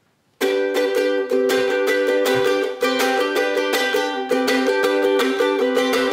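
Acoustic ukulele strummed in a quick, steady rhythm of chords, starting about half a second in after a brief silence: the instrumental intro of a song.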